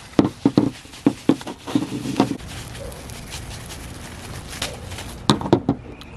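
Plastic packing wrap crinkling and crackling with many sharp clicks as a toy horse figure is worked free of it. The crackling eases to a steadier rustle about halfway through and picks up again near the end.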